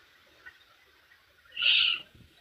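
Near silence, then a short, loud wordless vocal exclamation from a woman near the end.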